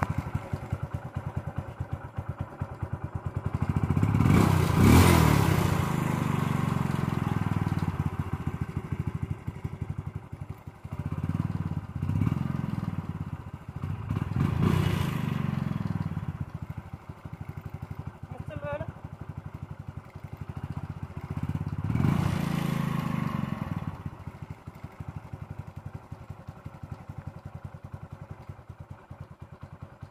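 Motorcycle engine idling and revved four times, the first and loudest rev about four seconds in, then settling to a quieter idle; it is running on a homemade air filter made of medical cotton.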